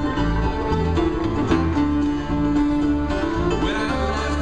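Acoustic bluegrass band playing an instrumental passage: plucked guitar and other string instruments, with a bowed fiddle.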